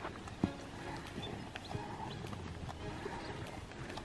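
Herd of beef cattle moving about at a wire fence: scattered hoof steps and rustles in dry grass, with one sharp knock about half a second in.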